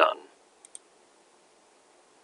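A computer mouse button clicked once: two faint ticks close together, press and release.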